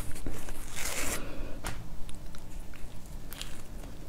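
Hands tearing a piece from a chocolate-coated cake: a crackling rustle about a second in, then a few small sharp clicks as the chocolate shell breaks away.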